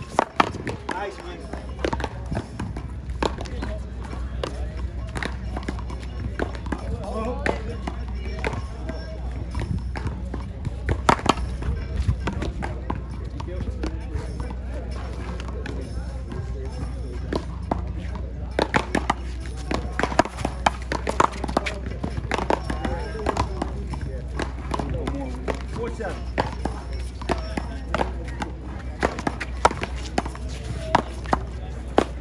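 Paddleball rallies: a small rubber ball cracking sharply off solid paddles and the wall, several hits in quick succession with pauses between points, over a steady low rumble. Voices and music can be heard in the background.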